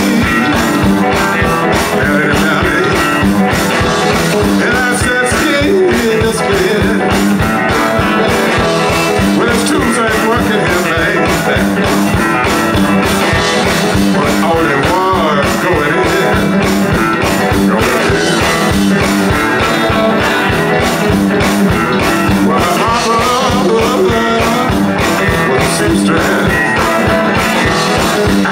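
Live blues band playing: electric guitars over a steady drum beat.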